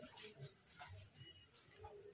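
Near silence, with a few faint, brief low sounds.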